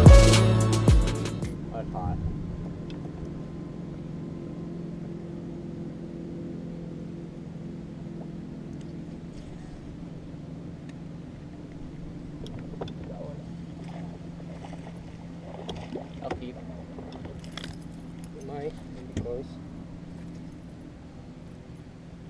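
Intro music ends about a second in. After that an electric bow-mounted trolling motor hums steadily, with a few small clicks and rattles of tackle and a short spoken remark near the end.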